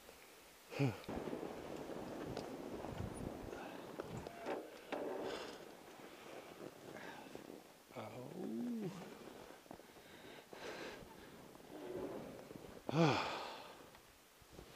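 Fat-tire e-bike ridden over a snowy trail: an uneven rush of tyre and wind noise, loudest in the first few seconds. The rider makes two short wordless vocal sounds, near the middle and near the end.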